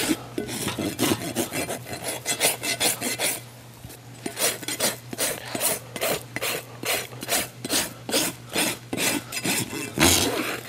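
Steel hoof rasp filing the outer wall of a horse's hoof in quick, even strokes, about three a second, with a short pause about three and a half seconds in, as the hoof wall is dressed on a hoof stand.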